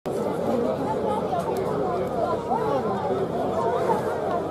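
Crowd of spectators chattering, many voices overlapping at a steady level.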